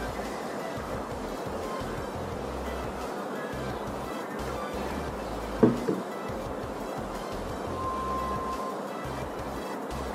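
Background music with a steady beat, and a single sharp knock a little past halfway.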